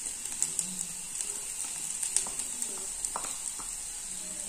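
Diced potatoes sizzling quietly in a non-stick kadai as grated coconut is added. Light scattered clicks and scrapes come from a wooden spatula stirring against the pan.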